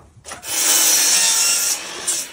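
Power miter saw cutting through a wooden board: a loud, steady cut lasting a little over a second, starting about half a second in.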